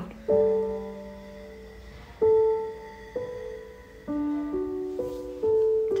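Slow, gentle background piano music: single notes and soft chords struck about every second, each ringing on and fading away.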